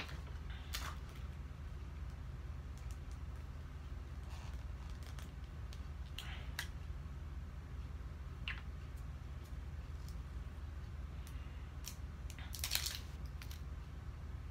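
Scattered light clicks and rustles of paper cards and small plastic slime containers being handled, over a steady low hum. A single louder, brief rustle comes near the end.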